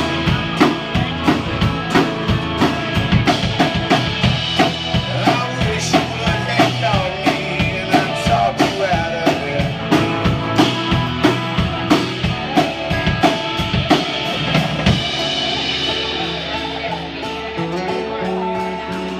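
A live band playing a song: acoustic guitars and bass over a drum kit keeping a steady beat of about two hits a second. The drums ease off in the last few seconds.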